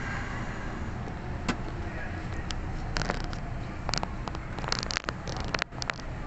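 Subway train running slowly into a station, heard from inside the front cab: a steady low rumble, with a run of sharp clicks and knocks in the second half.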